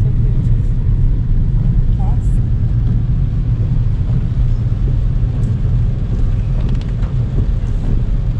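Steady low rumble of a car driving on a wet road, heard from inside the cabin.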